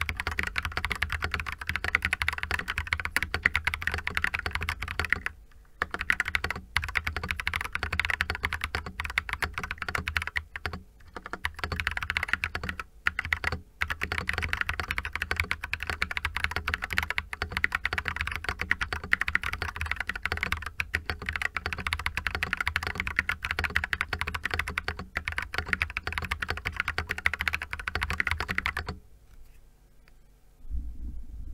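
Fast continuous typing on a GammaKay LK67 plastic-case mechanical keyboard fitted with Feker Panda tactile switches, with a few brief pauses and stopping about a second before the end. The spacebar is damped with silicone and gives no ping.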